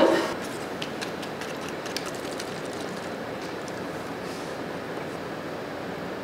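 Steady room hiss with a few faint clicks and rustles: a paper drink sachet being torn open and its citric-acid orange powder tipped into a glass bottle.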